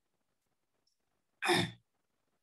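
Near silence, then about a second and a half in a single short, breathy sigh from a man's voice.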